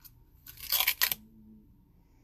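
Screw-top lid of a small body-butter jar twisted open, giving a short crunchy scraping about half a second in that lasts about half a second. A brief low hum follows.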